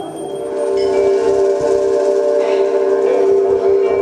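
A sustained chord of several steady tones that swells over about the first second and then holds level.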